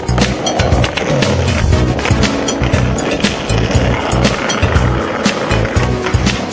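Skateboard wheels rolling over brick paving, a rough rumble mixed under music with a steady beat.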